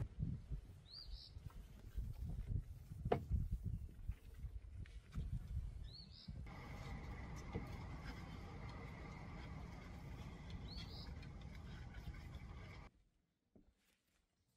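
Faint outdoor ambience with a small bird chirping three times, each chirp short and high, about five seconds apart; the sound drops away almost to silence near the end.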